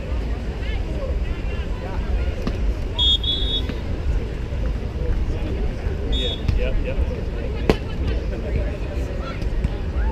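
Outdoor crowd ambience at a beach volleyball court: a steady low rumble of wind on the microphone under scattered spectator chatter. About three-quarters of the way through comes a single sharp smack, fitting a hand striking a volleyball on the serve.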